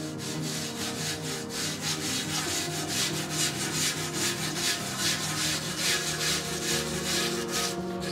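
A bonsai pot's rim being sanded by hand: quick, repeated back-and-forth rubbing strokes of abrasive on the pot's surface. Music plays underneath.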